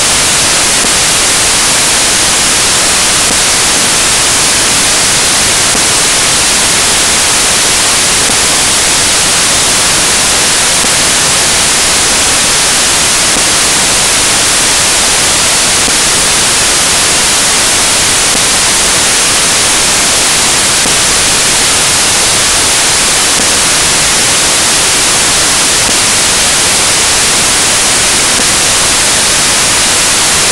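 Loud, steady static hiss: an even rush of noise, strongest in the upper range, that does not change at all.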